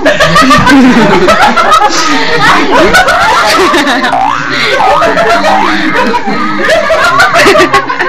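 Loud laughter and excited voices from several people at once, overlapping without a break.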